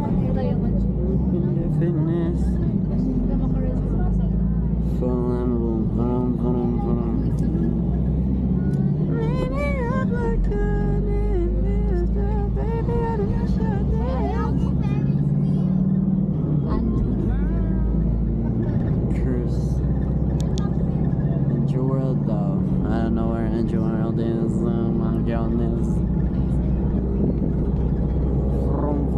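Steady road and engine rumble inside a moving passenger van's cabin, with a song with a singing voice playing over it.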